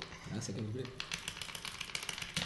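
Quick, irregular light clicks and taps of Tipp-Kick tabletop football figures and ball on a hard desk, with a faint low voice early on.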